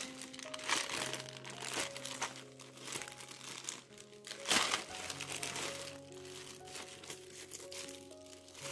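Clear plastic zip-top bags crinkling and rustling as hands dig through and open them, in irregular bursts, the loudest a little past the middle. Soft background music with slow held notes plays underneath.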